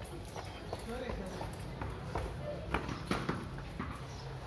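Voices talking in the background, with a few sharp knocks on a hard floor about three quarters of the way through.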